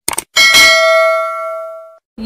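Subscribe-button animation sound effect: two quick clicks, then a single bright notification-bell ding that rings and slowly fades before it cuts off suddenly.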